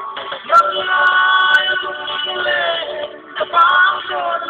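A man singing a slow melody with long, held, slightly wavering notes, with a short break a little past the three-second mark.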